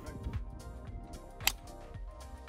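Background music, with one sharp crack about three quarters of the way in: a golf club striking the ball out of a sand bunker.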